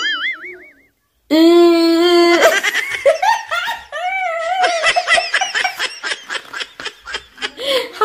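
A woman holds a long steady vowel sound for about a second, then laughs hard for about five seconds.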